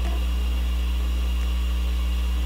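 A steady low hum with a faint hiss over it.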